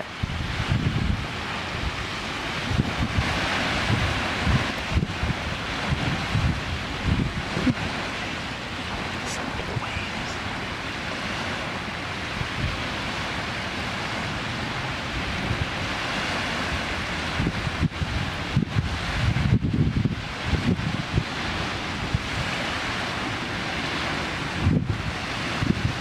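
Wind buffeting the microphone in irregular gusts over a steady wash of small waves breaking on the shore of a breezy bay.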